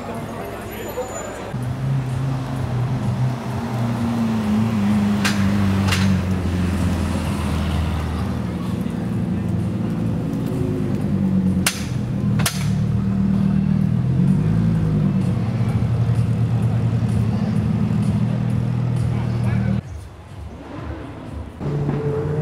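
A car engine running with a steady low hum, its pitch wavering a couple of times, with a few sharp clicks; the hum stops abruptly near the end.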